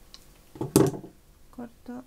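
A sudden, loud clatter about a second in, most likely the metal wire cutters being set down on the wooden table. It is followed near the end by two short murmurs from a woman's voice.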